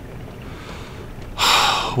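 A man's voice makes one sharp, noisy breath lasting about half a second near the end, an exasperated huff, over a faint steady background.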